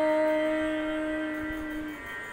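A woman's voice holding the long closing note of a Tamil devotional song, steady in pitch and slowly fading before it stops near the end, over faint accompaniment.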